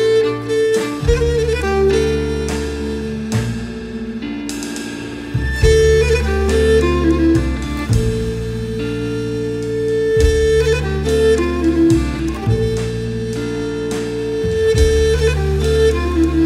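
Instrumental music: a bowed Cretan lyra carries a melody of long held notes over double bass and drums, the band growing louder about five seconds in.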